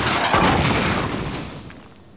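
Cartoon sound effect of a tank-type robot's cannon blast and explosion: loud noise that swells again just after the start and dies away over the last second.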